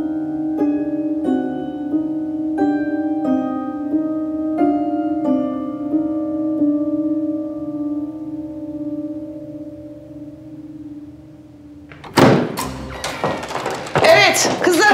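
Soft plucked lullaby-like soundtrack music, notes about every half second and a little more, fading away; about twelve seconds in, a sudden loud bang and clatter as a door is flung open.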